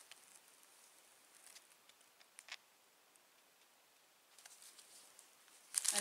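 Quiet handling noises: faint rustling and small clicks as small packaged items and plastic wrapping are handled. There is one sharper click about two and a half seconds in, and the rustling grows busier and louder near the end.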